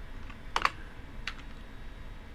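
Computer keyboard keys clicking: a few separate keystrokes, the loudest a quick pair about half a second in, over a faint steady room hum.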